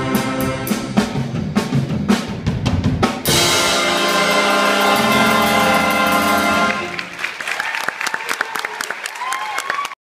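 Jazz big band of saxophones, trumpets and trombones with drum kit finishing a piece: drum hits punctuate the horns for about three seconds, then the whole band holds a loud final chord for about three and a half seconds until it cuts off. After the cutoff, many quick sharp claps follow, the audience applauding.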